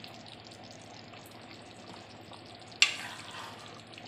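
Matar paneer gravy bubbling steadily at the boil in a black iron kadai as paneer cubes are slid in and stirred. A utensil knocks sharply against the pan once, a little under three seconds in.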